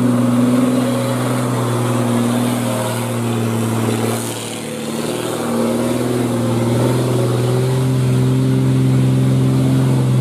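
Heavy diesel truck engines working hard under load while climbing, holding a steady, high engine note. About four to five seconds in the note dips briefly, then settles at a new steady pitch.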